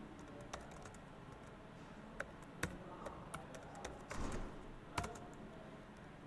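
Faint typing on a computer keyboard: scattered single key clicks, with a quicker run of keystrokes about four seconds in.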